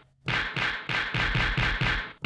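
A drum sample from the Akai MPC One+'s stock 'Filthy' urban kit, triggered from a pad in a fast, even stream of about five hits a second, each hit with a short downward pitch drop in the low end. The hits play through the pad's insert effects while a high-pass filter is set to take out some of the low end.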